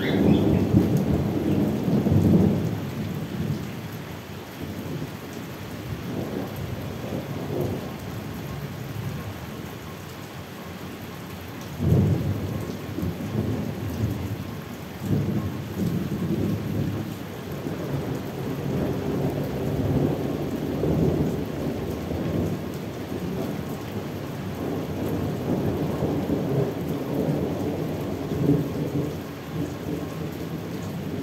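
Thunder over steady rain: a loud rumble right at the start, a sharper clap about twelve seconds in, then long rolling rumbles.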